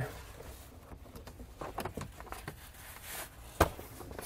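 A polyester cargo-area cover being handled as it is unhooked from the back seat and gathered up, with faint rustling and small ticks throughout and one sharp click a little before the end.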